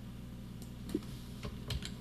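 A few faint computer keyboard key presses and clicks, as a word is deleted from a text label.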